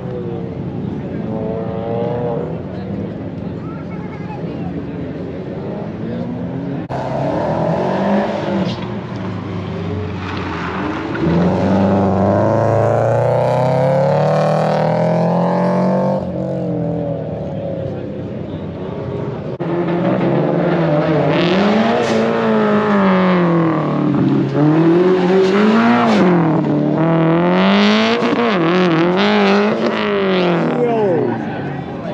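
A car engine revving hard and backing off again and again as a car is driven through a cone-marked autocross course. The pitch repeatedly climbs and drops with throttle and gear changes, and it gets louder and faster-changing in the second half.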